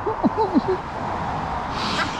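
A road vehicle passing, heard as a steady rush of tyre and road noise that swells near the end, after a brief bit of voice at the start.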